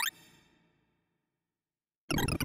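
Array Visualizer's synthesized sorting blips: a rising sweep of tones over the sorted array ends just at the start and fades out over about half a second, followed by digital silence.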